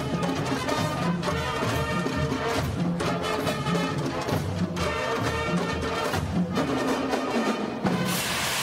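A high school marching band playing: brass, including trombones and sousaphones, over a steady beat of marching drums.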